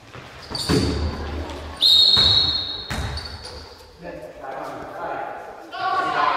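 Youth basketball game in a gym hall: the ball bouncing and thudding, with a loud, high-pitched squeal starting about two seconds in and lasting just over a second, and a shorter one before it. Voices of players and spectators echo in the hall.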